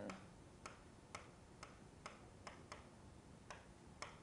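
Faint, irregular clicks, about two a second, of a stylus tapping the surface of a Promethean interactive whiteboard while a word is handwritten.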